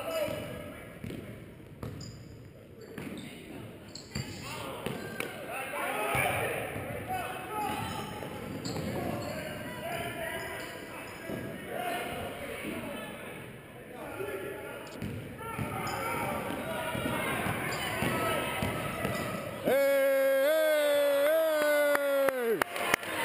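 Basketball game sounds in an echoing gym: a ball bouncing on the hardwood court with players' and spectators' voices. About two seconds before the end, a loud, steady scoreboard horn starts suddenly and holds, stopping play.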